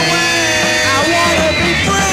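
A 1960s-style garage rock band playing an instrumental passage between sung lines. A held lead note bends in pitch about halfway through.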